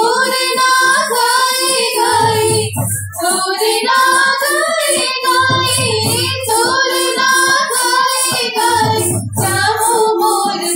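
Sambalpuri Odia folk song: high female singing over a steady, rapid high-pitched beat, with a deep low note coming in about every three and a half seconds. The singing breaks briefly about three seconds in and again near the end.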